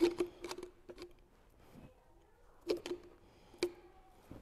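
Metal pipe clinking against the steel rollers of a hand-cranked bead roller as it is set in place: a few sharp metallic clicks with a short ring, a cluster in the first second and another about three seconds in.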